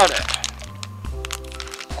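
Clear plastic zip bag crinkling and crackling in a series of short sharp clicks as it is handled, over steady background music.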